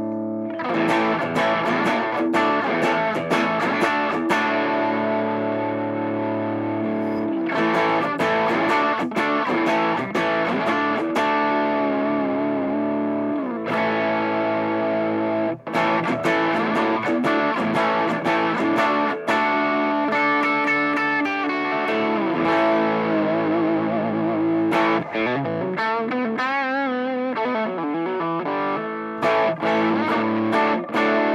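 Electric guitar on its bridge pickup played through an MXR Timmy overdrive pedal, with a dirty, overdriven tone. Strummed chords are left to ring and broken by short pauses, with wavering, bent notes near the end.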